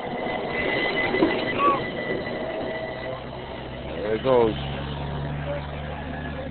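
Busy street ambience with background chatter of passers-by; a voice nearby about four seconds in is the loudest sound. From about four and a half seconds in, a low steady engine hum, like a vehicle idling, runs under it.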